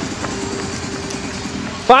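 A steady rush of wind and handling noise on a camera carried at a run, with footfalls on a wet road.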